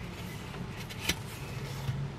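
Hands handling a paper leaflet and cardboard packaging, with a sharp click about a second in. A low steady hum comes in near the end.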